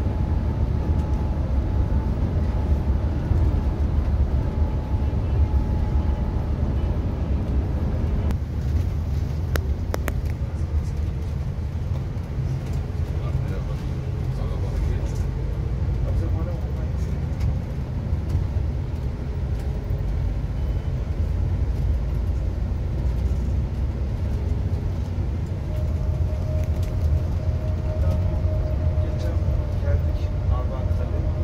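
Cabin noise inside a Neoplan Tourliner coach on the move, heard from the front seat: a steady low diesel engine and road rumble with a faint whine over it, and a few light clicks about ten seconds in.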